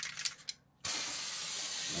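An aerosol can of silly string rattling in quick clicks as it is shaken. After a brief gap, the can sprays with a steady hiss from a little under a second in.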